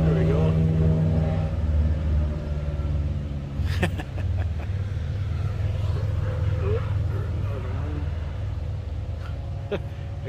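A motorcycle going by on the road, its engine a low steady drone that is loudest at the start and slowly eases off. A single sharp knock about four seconds in.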